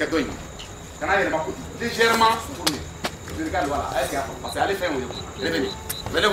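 Men's voices talking off and on, with crickets chirping in a steady run of short high pips in the background.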